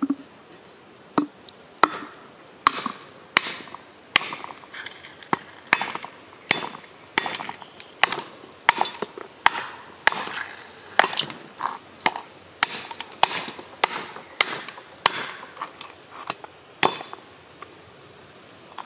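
A cleaver knocking against a giant sea snail's shell, chipping it open piece by piece: repeated sharp cracks, about one or two a second, with flakes of shell breaking off.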